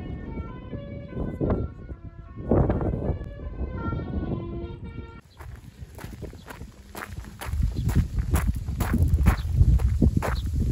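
Footsteps crunching on a gravel road at a walking pace, with low wind rumble on the microphone, from about halfway through. Before that, a run of short high-pitched notes over wind rumble.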